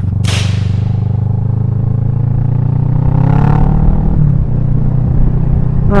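Motorcycle engine running under way, its pitch rising for a second or so and then dropping back about four seconds in, as in acceleration and a gear change. A brief loud rush of wind noise sounds just after the start.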